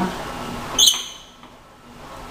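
A single sharp metallic click with a short ring from the row machine's seat or pad adjustment, a little under a second in, then quiet room tone.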